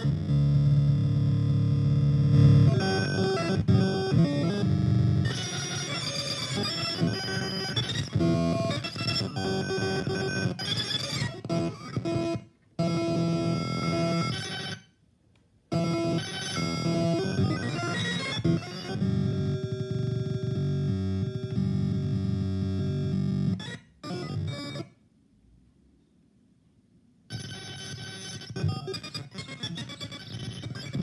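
Experimental electronic music from a Ucreate music-making toy: layered synthesizer loops and sound effects that start and stop abruptly, with a short break about halfway through and a two-second silence near the end.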